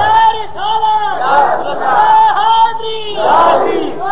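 A crowd of men shouting religious slogans together, loud repeated rising-and-falling cries from many voices at once, a congregation's chanted response to the preacher.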